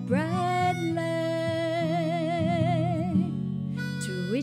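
Harmonica and acoustic guitar playing a slow minor-key folk tune. The harmonica scoops up into one long held note with a hand vibrato over steady strummed guitar chords, breaks off after about three seconds, and a new note rises in near the end.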